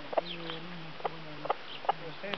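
A hen clucking: a low drawn-out murmur broken by several short, sharp clucks.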